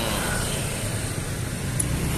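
A motor scooter passing close by, over a steady hum of street traffic.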